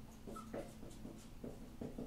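Dry-erase marker writing on a whiteboard: a faint run of short scratchy strokes, several a second, with a brief squeak early on.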